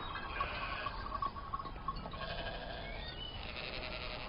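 A flock of sheep bleating faintly, with several overlapping calls.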